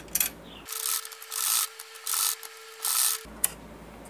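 Usha sewing machine stitching a seam in four short runs about two-thirds of a second apart, each a brief rasping whirr.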